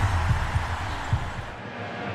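Deep bass thumps over a noisy rush from an animated logo sting, dying away about one and a half seconds in. Then comes the steady low hum of a stadium crowd.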